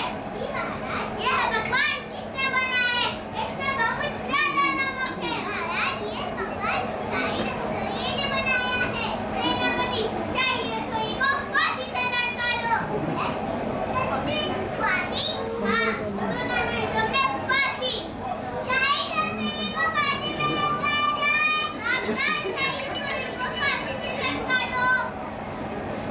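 Children speaking and calling out in high, raised voices, one line after another, with a faint steady hum underneath.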